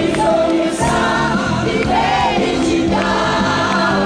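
Live pop song: a singing duet with band accompaniment over a steady beat.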